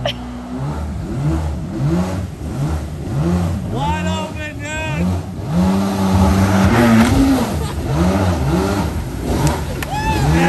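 Mini jet boat's engine revving up and dropping back again and again in quick succession, with one longer hold at high revs around the middle.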